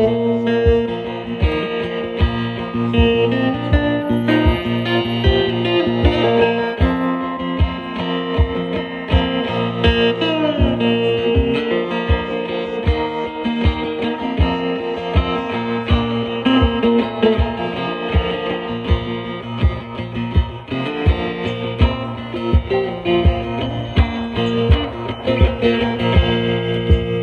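Second Hand Smoke cigar box guitar with a pickup, played with a slide: an instrumental blues riff with sustained notes and sliding glides in pitch. Under it runs a steady low beat from a foot-stomped percussion board.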